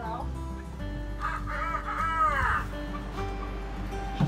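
A chicken's long call about a second in, rising and then falling in pitch over about a second and a half, with background music underneath.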